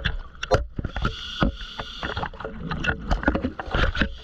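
Scuba breathing underwater: a hiss of breath through the regulator and bubbling exhaust, with many sharp clicks and knocks as gear scrapes and bumps against rock in a tight squeeze.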